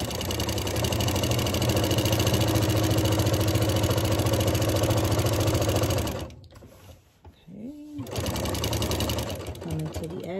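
Singer Quantum Stylist 9960 domestic sewing machine with a walking foot stitching a quilt at a steady speed, the motor humming under the rapid needle strokes. It stops about six seconds in.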